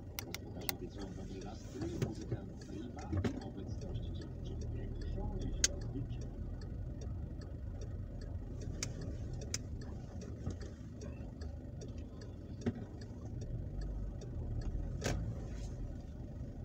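Inside a car crawling in slow traffic: a steady low engine and road rumble, with scattered light clicks throughout.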